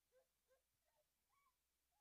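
Near silence, with a few very faint, short chirp-like sounds.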